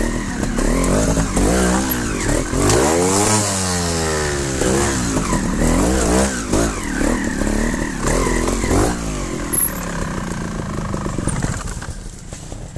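Trials motorcycle engines revving, the throttle opened and closed again and again so the pitch rises and falls repeatedly, as the bikes pick their way up a rocky gully. The engines fall quieter near the end.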